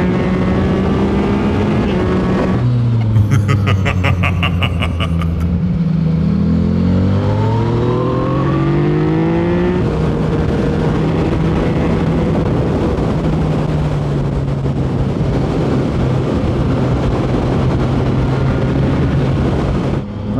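Motorcycle engine heard from on board over wind rush. It runs steady, drops in pitch as the throttle rolls off about two seconds in, with a fast, even crackle for a couple of seconds, then rises as the bike accelerates and settles back into a steady cruise.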